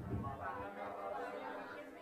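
Faint, distant voices of several students answering a question together, well below the lecturer's microphone level.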